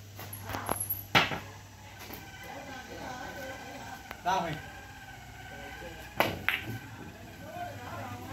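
Sharp clicks of carom billiard balls as a shot is played: a pair of hard clicks a fraction of a second apart about six seconds in, as the cue ball is struck and hits another ball. There is a single similar click about a second in.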